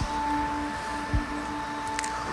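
Soft background music: a few steady notes held as a sustained chord, with a short low thud about a second in.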